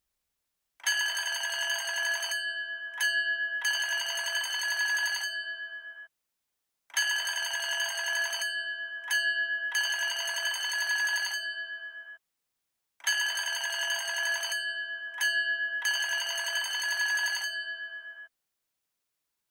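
A bell ringing in three long bursts about six seconds apart, each with a brief break partway through, with a fast clapper rattle like an old telephone or alarm bell.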